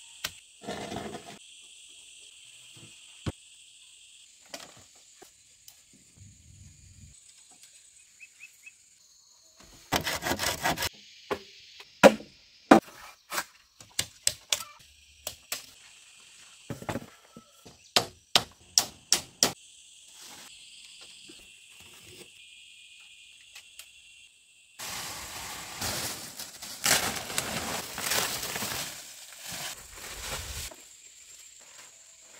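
Manual outdoor work sounds: a few knocks of a digging pole in soil, then a run of sharp wooden clacks as bamboo poles knock together, then dry palm fronds rustling and scraping as they are dragged, over steady high insect buzzing.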